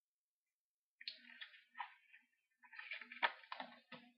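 Hard white plastic two-piece phone case being handled: scraping and rattling from about a second in, with several sharp clicks near the end.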